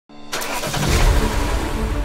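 A car engine starting up, used as a sound effect. It rises quickly from silence to a steady, loud, low rumble.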